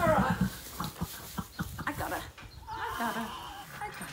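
A horse whinnies at the start and again about three seconds in, with a run of short knocks and scuffles in between.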